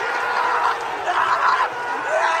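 Football crowd roaring and cheering a goal, with loud shouts from celebrating fans close to the microphone surging from about a second in.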